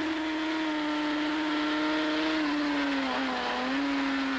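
Racing motorcycle engine heard from on board, held at high revs in one steady note. About two and a half seconds in the pitch sags a little as the throttle eases, then it steadies again.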